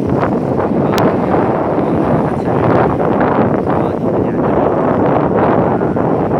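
Wind buffeting the microphone: a loud, steady rushing. A single short click comes about a second in.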